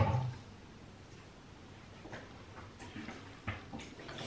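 A sharp knock right at the start, then faint clicks and taps near the end, from a small shot glass and bottle being handled in a quiet kitchen.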